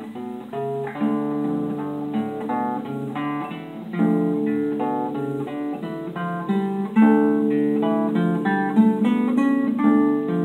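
Ten-string classical guitar played fingerstyle in D minor: a steady stream of plucked melody notes over ringing bass notes, growing louder about four seconds in and again about seven seconds in.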